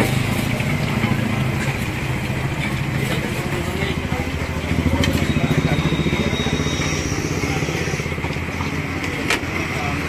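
A motorcycle engine running over street noise, pulsing harder about five seconds in, with background voices. Oil sizzles in a deep-frying kadai, and a metal slotted ladle clicks against the pan a few times.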